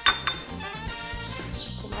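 Background music playing, with a metal spoon clinking twice against a small glass bowl just after the start as cream cheese is spooned in.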